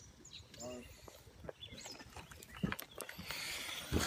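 Handling noise as someone climbs into a car holding a phone against a shirt: faint fabric rustle and scattered small clicks, with a rustling scrape in the last second. A short faint voice-like sound comes under a second in.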